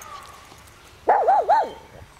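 A small dog gives one short, loud vocal call about a second in, wavering up and down in pitch three times.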